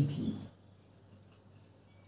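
Faint scratching strokes of a marker pen writing on a whiteboard.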